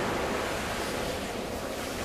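Ocean surf washing on a beach: a steady rushing wash of waves that eases slightly in loudness.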